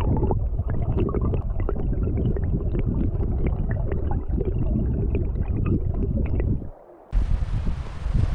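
Stream water rushing over stones, heard muffled and low from a camera held underwater, with many small clicks and pops of bubbles and pebbles. About seven seconds in it cuts off and gives way to a brighter rush of wind on the microphone.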